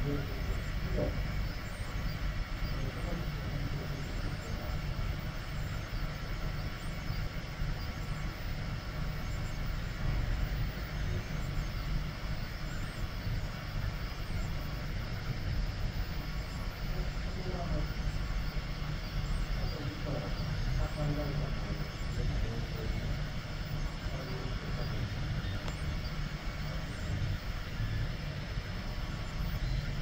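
A 3D printer running a print: a steady low hum with the even whine of the blower fan on the print head, and faint shifting motor tones as the head and bed move.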